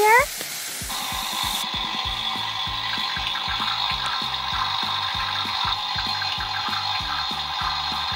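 Background music with a steady beat. From about a second in, a steady espresso-machine brewing sound effect, a dense even hiss, runs over the music.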